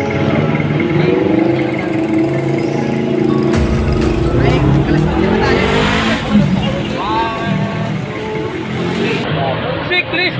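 A motor vehicle engine running in the street, rising in pitch about four to six seconds in, with people talking over it.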